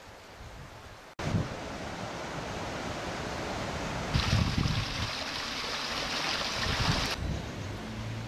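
Steady rushing of a stream flowing under a bridge, mixed with wind gusting on the microphone. It is quieter for the first second, then louder and brighter from about four seconds to near the end.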